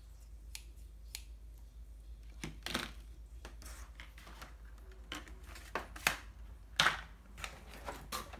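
Scattered short clicks and brief rustles from handling a pair of rubber-cutting scissors and their clear plastic packaging tray on a tabletop, with a cardboard box rustling near the end as a boxed item is lifted out of it.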